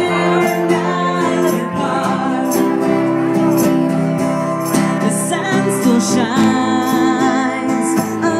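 A woman singing with a strummed acoustic guitar, played live.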